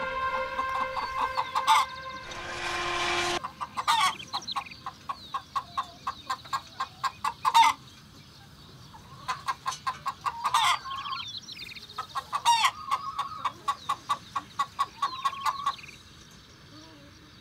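Chickens clucking in quick runs of short repeated notes, in three stretches with brief pauses between them. A short rushing noise comes just before the first run.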